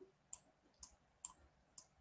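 Four short, light clicks about half a second apart, typical of a computer mouse being clicked while the map globe is being worked on screen.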